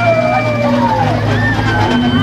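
Crowd of people talking as they walk, over steady band music.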